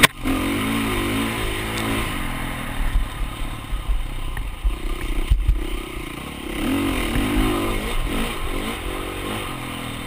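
Dirt bike engine running hard, its revs rising and falling continually as the rider works the throttle along the trail. Two sharp knocks cut through, one right at the start and one about five and a half seconds in.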